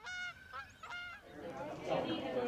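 Two short bird calls about a second apart, over a faint background hiss.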